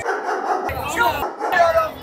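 Crowd of football fans talking and calling out to each other in stadium stands, several voices overlapping with short bark-like calls.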